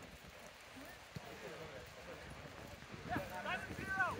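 Players shouting across a rugby pitch, heard faintly at a distance: low for the first few seconds, then several voices calling out near the end. There is a single faint thud about a second in.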